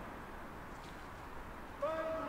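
Faint open-air crowd and field background, then a man's long held shout beginning sharply near the end, typical of the calls made at a rugby scrum.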